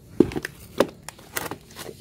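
Four or five short knocks and clicks from the plastic bucket of potting soil being moved and set down among the polybags.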